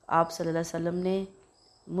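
A woman lecturing in Urdu. In the pauses there is a faint high-pitched chirp-like sound and a thin steady whine.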